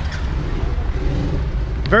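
Street traffic: a steady low rumble of vehicle engines.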